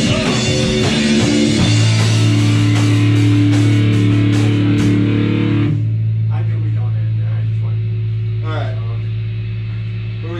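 Punk rock band with electric guitars and drums finishing a song: the last chord is hit and held ringing for a few seconds, then the cymbals and guitar cut off about six seconds in. A low steady drone from the amplifiers carries on under some talking.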